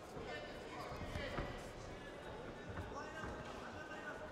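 Dull thuds of boxers' feet stepping and shuffling on the ring canvas during a bout, with a sharper knock about a second and a half in, under shouting voices from ringside.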